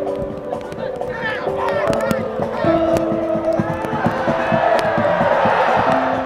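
A football stadium crowd shouting and cheering as a goal is scored, growing louder and loudest near the end, over soft piano background music.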